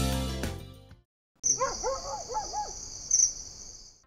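Music fading out, then after a short silence a steady high insect drone with a series of short calls from birds over it, a rainforest ambience.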